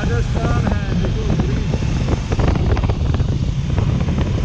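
Wind rushing over a helmet microphone at road speed, over the steady low drone of a Kawasaki Versys 650's parallel-twin engine and its tyres on the road.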